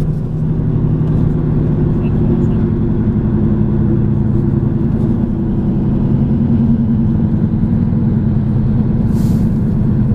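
Steady car engine and road noise heard from inside the cabin of a moving car, a low drone that shifts slightly in pitch. There is a brief hiss about nine seconds in.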